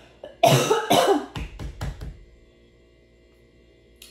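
A woman coughing: one hard cough about half a second in, then several shorter coughs and throat-clearing over the next second and a half.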